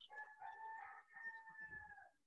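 A rooster crowing faintly: one long crow in two held notes with a short break about halfway, dropping slightly in pitch at the end.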